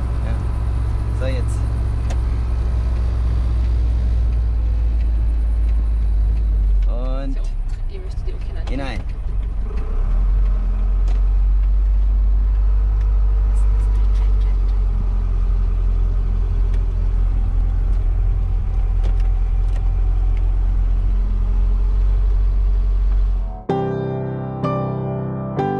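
Mercedes 711D van's diesel engine droning steadily under load, heard from inside the cab on a mountain climb, with a brief dip in level around seven to nine seconds in. Near the end the engine cuts out and soft piano music takes over.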